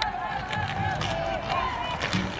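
Several high-pitched voices shouting and calling out across the field, over a faint background of crowd noise.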